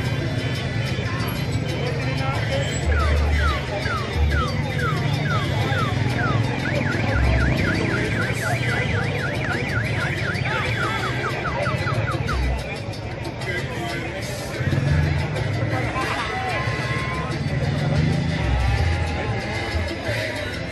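An electronic alarm sounding a run of falling whoops, starting about three seconds in at a couple a second, then switching to a faster run of short falling chirps that stops a little past halfway. Steady low outdoor rumble throughout.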